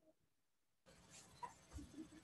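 Near silence on a video call, then about a second in a hiss of room noise cuts in suddenly as a participant's microphone opens, with a soft low thump soon after.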